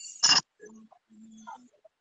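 A person's voice: one short, loud vocal sound just after the start, followed by faint, low murmuring for about a second and a half.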